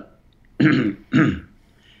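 A man clearing his throat in two short bursts, about half a second apart near the middle.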